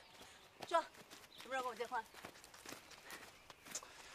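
A woman's voice in a few short, wavering vocal sounds rather than full sentences, over faint, scattered light footsteps.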